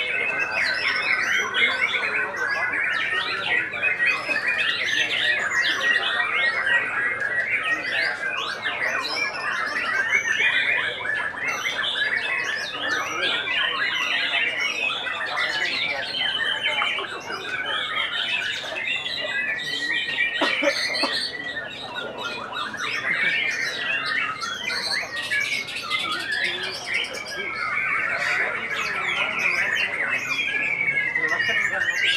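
White-rumped shamas (murai batu) in contest cages singing without pause: a dense, fast jumble of whistles, chirps and harsh notes from more than one bird at once. A long held whistle comes just past the middle, and a falling whistle near the end.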